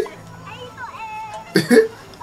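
A person hiccuping once: a short, sharp vocal burst about one and a half seconds in, over faint speech.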